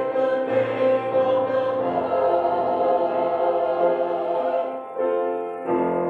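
Church choir singing in slow, sustained chords, with a brief break about five seconds in before a new chord is taken up near the end.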